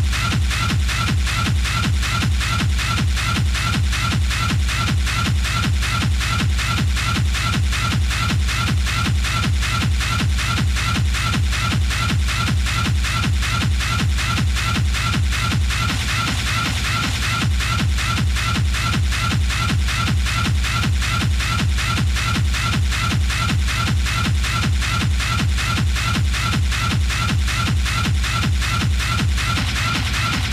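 Hard techno (schranz) playing in a live DJ mix: a fast, steady pounding kick-drum beat with a repeating high-pitched stab over it. About halfway through, a new layer enters and the sound grows brighter.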